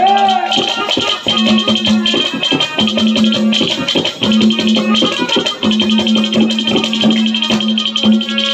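Instrumental interlude of live Haryanvi ragni folk music: fast, dense percussion under a steady repeated melodic note, after a sung note ends about half a second in.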